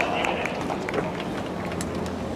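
A voice from the stands trails off at the start, then a low murmur of spectators at a tennis court, broken by a few faint clicks and taps, with one sharper click near the end.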